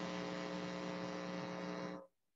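Steady electrical mains hum with a buzzy, pitched edge on a video-call audio line, cutting off suddenly at the end.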